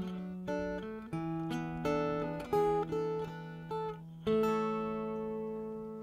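Steel-string acoustic guitar playing the closing phrase of a folk song: a run of single plucked notes, then a final chord about four seconds in that rings and slowly fades.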